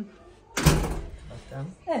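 A door being shut: one loud slam about half a second in, its sound dying away over the next half second.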